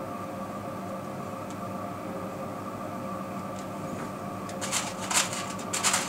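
A steady background hum with several held tones. Near the end come a few short rustling scrapes as hands work the model's hair.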